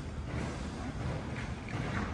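Wind rumbling on an outdoor microphone, a steady low noise with no clear events in it.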